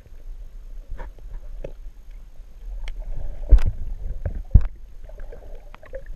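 Muffled underwater sound through a camera's waterproof housing held just below the surface: a low rumble of moving water with several sharp knocks and clicks, the loudest about three and a half seconds in.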